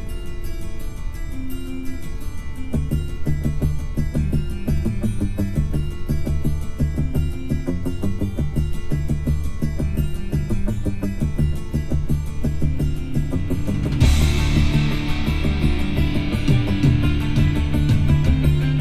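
Rock music playing through a 2021 Hyundai Santa Fe's 12-speaker Harman Kardon car audio system, heard inside the cabin. A steady beat with bass comes in about three seconds in, and the music turns louder and brighter near the end.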